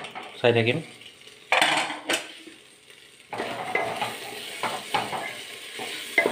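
Vegetables frying in hot oil in an aluminium pressure-cooker pot, a steady sizzle with a spatula scraping and clinking against the metal as they are stirred. A short clatter comes about one and a half seconds in, and the sizzle with stirring sets in steadily just after three seconds.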